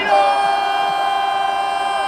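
A loud, long horn-like sound: several steady tones held together as a chord for about three seconds, falling in pitch as it cuts off.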